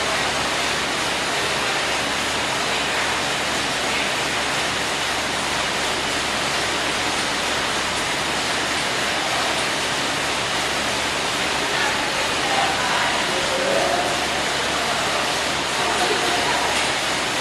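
Steady whooshing of air-bike fans being pedalled, an even rushing noise with no breaks.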